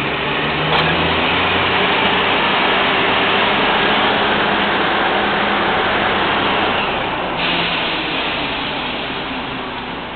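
Drilling rig floor machinery running loudly and steadily: a continuous mechanical din with a low engine hum. A higher hiss joins in at about seven seconds.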